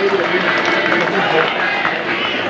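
Indistinct, overlapping voices of players and spectators at a football ground just after a goal.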